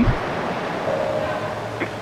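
Steady hiss with no clear source, with a faint steady tone about a second in.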